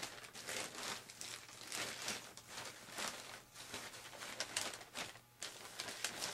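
Faint, irregular rustling and crinkling of small items being handled off-camera on a workbench.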